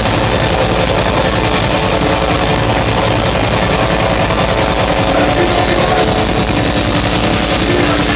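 Loud heavy rock music played live, with a drum kit driven hard under guitar and bass, continuous with no breaks.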